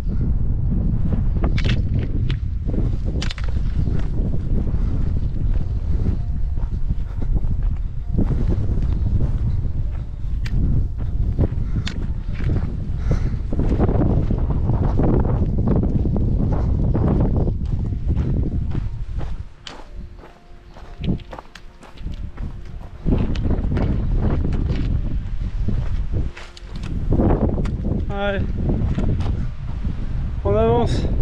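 Wind buffeting the microphone on an exposed mountain trail, with footsteps crunching on rocks and gravel. The wind drops off briefly twice in the second half.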